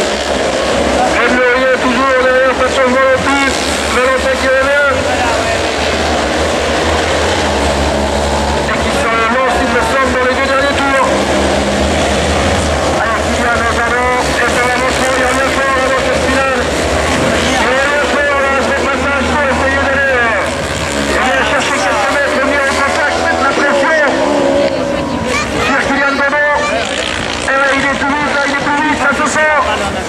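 Autocross race cars' engines running and revving on the dirt circuit, with a steady low hum under them and a voice talking over it.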